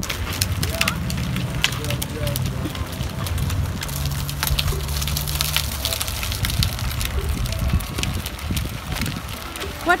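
Wind rumbling on a phone microphone carried by someone walking outdoors, with scattered light clicks and faint voices of people nearby.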